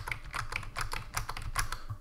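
Computer keyboard keys tapped in a quick, steady run of clicks.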